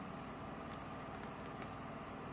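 A pause between words with only faint, steady background noise.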